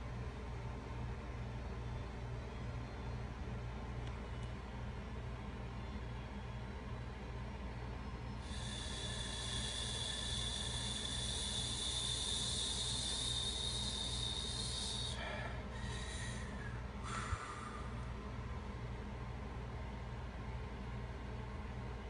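A steady low hum runs under everything. About eight seconds in, a high hiss starts, lasts roughly seven seconds, and is followed by three short hisses and a single click.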